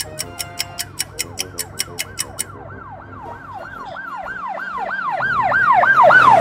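Police siren sound effect in a fast rising-and-falling wail, about three sweeps a second, starting faint about a second in and growing steadily louder. Over the first two seconds or so, a fast ticking of about five clicks a second plays with it.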